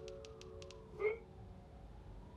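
Smartphone keyboard typing: a quick run of light taps, then a short upward-sweeping blip about a second in as the text message sends. A low sustained music drone sounds underneath.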